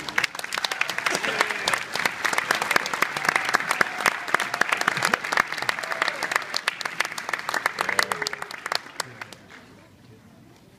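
Audience applauding, with a few voices among it; the clapping dies away near the end.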